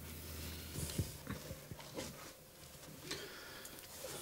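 Faint rustling and a few soft knocks from someone moving about a small carpeted room, with a low hum that fades about a second in.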